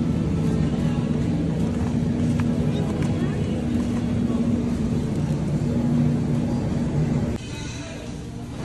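Supermarket ambience: a steady low hum from the refrigerated display case, with indistinct voices. It cuts off suddenly near the end.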